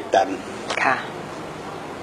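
A woman speaks two brief utterances near the start, the second a short rising sound, followed by a second of low room tone.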